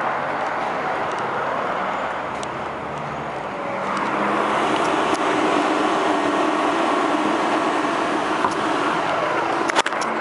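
Road traffic going past, a steady wash of noise that swells about four seconds in as a car goes by and stays up.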